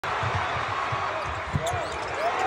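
Basketball dribbled on a hardwood court, a quick series of low thuds, over the steady noise of a large arena crowd.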